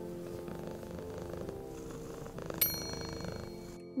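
A cat purring over a soft, steady music bed, with a single bright chime about two and a half seconds in.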